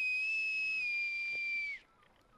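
Small brass whistle blown in one long, steady, high note that drops slightly in pitch about a second in and stops just before the two seconds are up.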